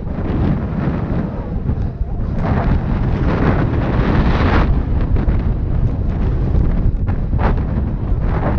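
Wind buffeting an action camera's microphone as a mountain bike rides fast down a rough grassy trail, mixed with the rumble of tyres over the ground. The noise is steady and loud throughout and grows brighter for a couple of seconds around the middle.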